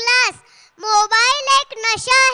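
A young child's high voice delivering short, sing-song phrases, with a brief pause about half a second in.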